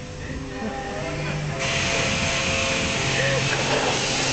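Self-serve car wash machinery humming steadily, with a high-pressure spray wand's hiss switching on suddenly about one and a half seconds in and running on at a steady level.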